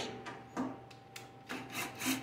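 Faint metal-on-metal scraping as an 8 mm socket on a cordless drill is fitted onto the screws of a sheet-metal plasma cutter case: a click at the start, then a couple of short scrapes near the end.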